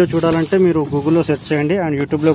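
A man talking in Telugu; speech only, with no other sound standing out.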